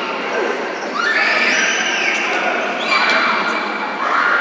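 Indoor futsal game in a gymnasium: players shouting across the court, with the ball being kicked and knocking on the floor, all echoing in the large hall. Two drawn-out calls, about a second each, come about a second in and near the end.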